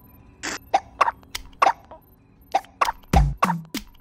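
A cartoon monkey's hiccups: short, sharp pops at an uneven pace. Near the end they fall into a regular beat with deep, booming kick-drum thumps, turning the hiccups into music.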